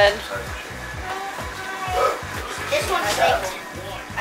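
Background music with a steady bass beat, with faint voices of people talking over it.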